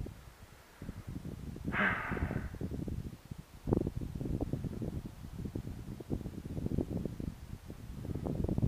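Wind buffeting a body-worn camera's microphone in an open field: an irregular low rumble with rustling, and a brief higher hiss about two seconds in.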